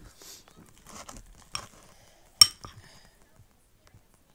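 A metal spoon stirring sticky slime in a metal bowl, with soft scrapes and scattered clinks against the side. The sharpest clink comes about two and a half seconds in.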